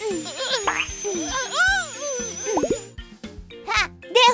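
Cartoon dental drill sound effect, a steady high whine that stops about three seconds in. It plays over children's background music and squeaky cartoon character cries that slide up and down in pitch.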